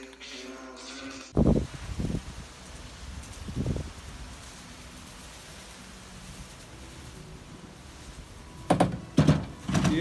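A few dull thumps and knocks, separated by a faint steady background: three low thuds in the first few seconds and two sharper knocks near the end.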